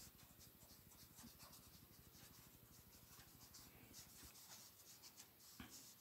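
Faint strokes of a brush-tip marker on sketchbook paper: a run of short, irregular scratching rubs as colour is laid in.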